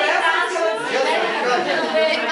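Several people talking at once in overlapping chatter, with no one voice standing out clearly.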